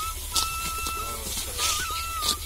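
A thin, whistle-like melody of long held notes: one note held for most of a second, then a wavering note with a small step up near the end. Under it come short crisp rustles and snips of sickles cutting through dry rice stalks.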